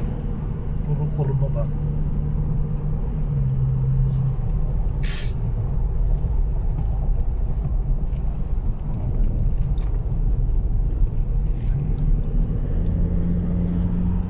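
Road noise inside a moving car: a steady low rumble of engine and tyres at highway speed. A short hiss comes about five seconds in.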